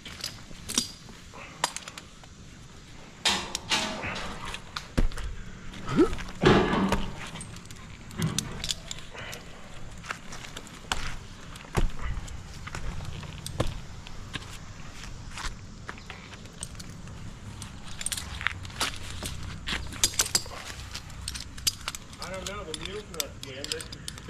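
Tree climber's metal climbing hardware clinking and rope and gloves scuffing on maple bark in scattered, irregular clicks and rustles, with a few brief muffled voices.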